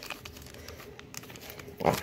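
Faint crinkling and small clicks of a clear plastic bag being handled and pulled open around top-loaded trading cards. A man says "wow" near the end.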